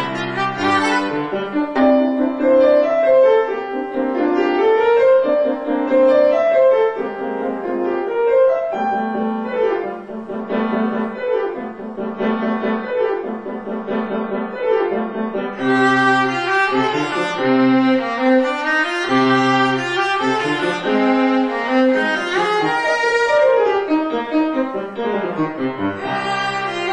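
A bowed string instrument playing a classical solo piece with piano accompaniment. The melody moves in connected notes, and about two-thirds of the way through the playing grows fuller and brighter.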